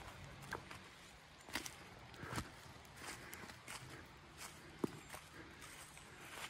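Faint footsteps on wet grass and slushy snow, a few soft irregular steps over a low hiss.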